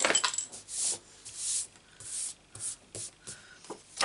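Hands handling a sheet of cardstock and brushing across a craft mat: a run of short rustling, brushing strokes, about six in four seconds.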